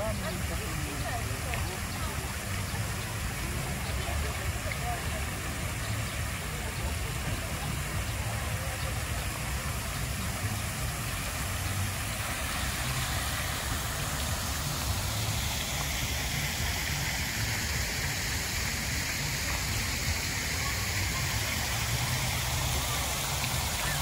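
Water from a tiered stone fountain splashing into its basin, a steady hiss that grows louder over the second half as the fountain comes close, over a low steady rumble.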